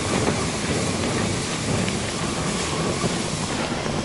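Wind blowing across the microphone: a steady, loud, rough rushing noise that stops suddenly at the end.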